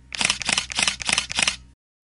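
Camera shutter clicking in a rapid series of about five shots, roughly three a second, then stopping.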